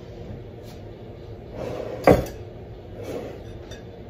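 Kitchenware being handled at a stand mixer: soft scraping and light clicks, with one sharp clunk about two seconds in.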